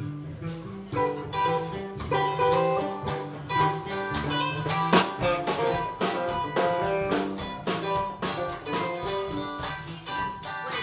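Live band playing a song, guitar to the fore over drums and hand percussion.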